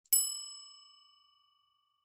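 A single bell-like ding, struck once, its tones ringing on and fading out over about a second and a half: a chime sound effect marking a section title card.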